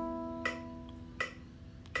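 Nylon-string classical guitar with its open strings plucked by the fingers, one held note ringing and slowly fading. Light clicks about half a second in and again after a second, where some of the ringing stops.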